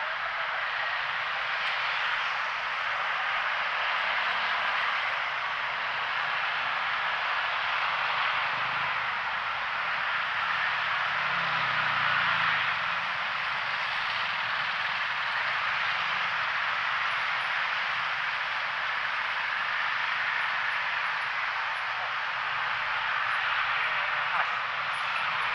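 Steady road traffic noise from dense, slow-moving rush-hour traffic, mostly motorcycles with cars and buses among them. A lower engine rumble swells for a few seconds around the middle.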